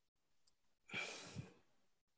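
A man's single audible breath, lasting about half a second and starting about a second in, taken in a pause between spoken phrases; otherwise near silence.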